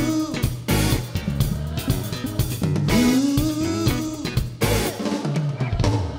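Live band playing an upbeat song: a full drum kit beat with bass drum and snare, electric bass, electric guitars and keyboard, with a gliding melodic line twice.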